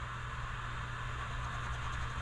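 Soft scratching of a scratch-off lottery ticket's coating under the edge of a poker-chip scratcher, heard as a faint steady hiss.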